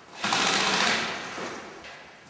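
Airsoft electric rifle firing a full-auto burst, a fast mechanical rattle lasting about a second before it tails off.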